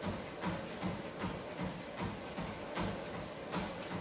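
Footfalls of a runner jogging on a motorised treadmill belt, about three steps a second, over the treadmill's steady running noise.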